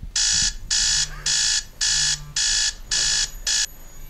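Electronic alarm clock beeping: seven loud, evenly spaced beeps at about two a second, the last one cut short.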